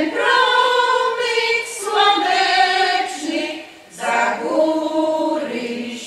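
Women's folk choir singing unaccompanied in several voices: one long sung phrase, a short breath about four seconds in, then the next phrase.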